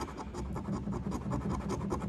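A coin scratching the coating off a lottery scratch-off ticket in quick, short, repeated strokes.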